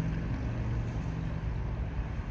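A car idling, heard from inside the cabin as a steady low hum with an even hiss over it.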